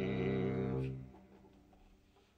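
The last held note of a jazz ballad: a man's low sung note with slight vibrato over a double bass, dying away about a second in and leaving a quiet room.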